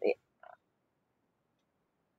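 A woman's spoken word trails off, and about half a second later comes one brief, faint throat sound. After that there is near silence, in which the audio drops out entirely.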